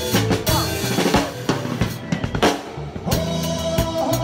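Live rock-band drum kit played hard with sticks: dense snare, tom and bass-drum hits. The band's held notes drop away for a couple of seconds, and the full band comes back in about three seconds in.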